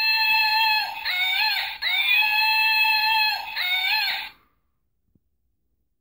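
A high-pitched, held screeching call in two long notes, broken briefly near the two-second mark. Its pitch wobbles and bends twice, and it stops about four and a half seconds in.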